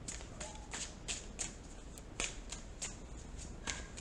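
A tarot deck being shuffled by hand: a string of short, irregular card clicks, about three a second.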